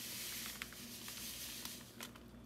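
Plastic pouch rustling as chia seeds are shaken out onto yogurt, with a soft hiss and a few faint, scattered ticks.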